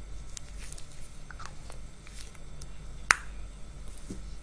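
Small plastic handling clicks from blood-collection gear, with one sharp click about three seconds in, over a low steady hum.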